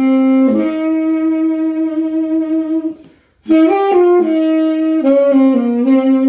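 A saxophone played solo, slow and unaccompanied. A long held note is followed by a brief breath gap about halfway through, then a few shorter notes stepping up and down before settling on another held note.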